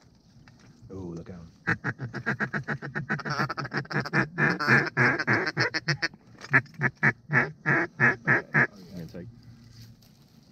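Mallard duck call blown by a hunter to lure ducks in: a long run of loud, rhythmic quacks that speeds up in the middle, slows again, and stops about nine seconds in.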